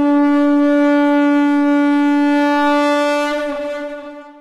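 Conch shell (shankh) blown in one long, steady note with bright overtones, its pitch sagging slightly as it fades out near the end.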